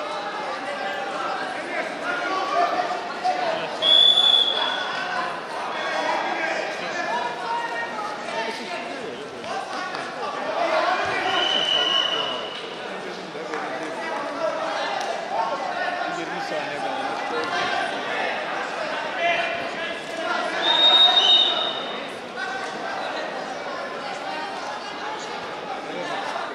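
Arena crowd talking and shouting throughout, with three short blasts of a referee's whistle: about four seconds in, around twelve seconds, and around twenty-one seconds, the last the loudest.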